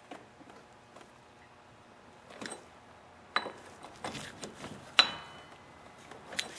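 Breaker bar and socket clinking on the 30 mm front axle nut as it is tightened: about five separate metallic clicks starting a little over two seconds in, two of them ringing briefly.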